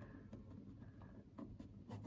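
Faint scratching of a pen writing on notebook paper.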